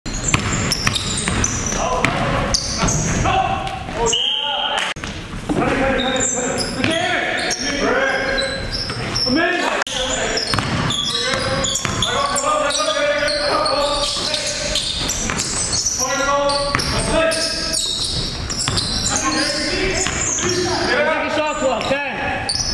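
A basketball being dribbled and bouncing on a hardwood gym floor, repeated knocks ringing in a large gymnasium, with players' voices calling over the game.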